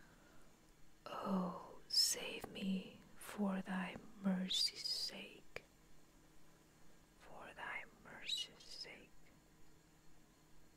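Whispered speech in two phrases, with a short pause between them.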